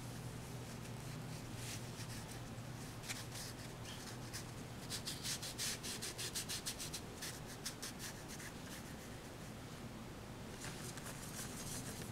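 Pure wolf-hair ink brush scrubbing and dabbing on paper, pressed hard: quiet rough strokes, with a quick run of them about five to seven seconds in and another cluster near the end, over a steady low hum.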